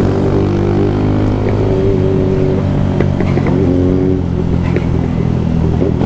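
Honda CG 160 single-cylinder motorcycle engine running at a steady cruising speed, its pitch holding nearly level, heard from the rider's seat.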